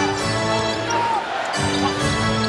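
Arena music playing over a live basketball game, with the ball bouncing on the hardwood court.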